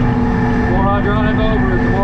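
Cat 953C track loader's diesel engine running steadily, heard from inside the cab, with a constant drone and a steady whine.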